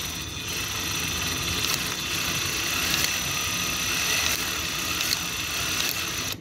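An Axial Capra RC crawler's electric motor and drivetrain running at a steady speed, a constant whine of spinning gears and shafts, while the dig function is being shown.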